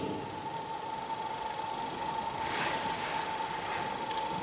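Room tone with an even faint hiss and a steady high-pitched whine that holds one pitch throughout.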